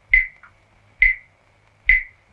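Large brass pot struck three times at an even pace, a little under a second apart; each strike is a sharp metallic clang with a short ringing tail.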